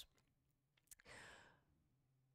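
Near silence, with one faint, short breath from the speaker about a second in.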